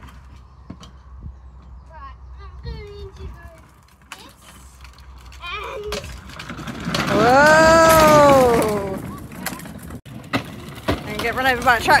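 Plastic wheels of a child's pedal ride-on toy tractor rolling along a tarmac path, a faint rumble with small clicks. About seven seconds in, a loud, long call rises and then falls in pitch over about two seconds, the loudest sound here.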